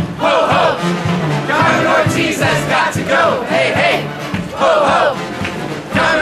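A crowd of marching protesters chanting a slogan together, the same short shouted phrase repeating about once a second.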